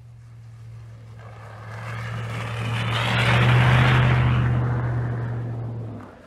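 Pickup truck with a front-mounted snowplow driving past: a steady engine hum with tyre noise on the snowy road that builds to its loudest about three and a half seconds in, then fades and cuts off sharply at the end.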